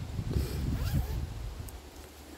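Scraping, rasping handling noise for about a second as two glass beer bottles are worked against each other, then a short sharp click near the end.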